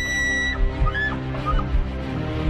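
Bull elk bugling: the tail of a long, high whistle with many overtones ends about half a second in, followed by a few short chuckling grunts. Background music with a steady beat runs underneath.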